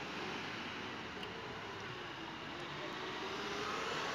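Steady street traffic noise: cars moving slowly along the road past the camera, growing a little louder near the end as one draws close.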